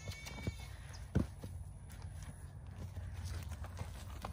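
A young Clydesdale foal's hooves thudding on sandy ground as it trots around, with one louder thump about a second in.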